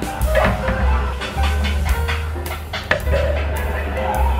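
Background music with a heavy bass line and a steady drum beat.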